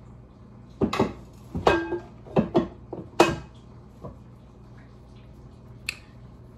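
Kitchen containers and dishes being handled on a counter: a run of short knocks and clinks, about six, one ringing briefly like a dish or jar near two seconds in.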